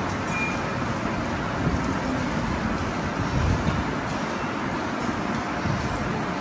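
Steady even background noise with no distinct events.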